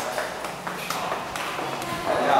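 A few sharp clicks and taps of footsteps on a polished hard floor, spaced irregularly, over a low murmur of voices in the background.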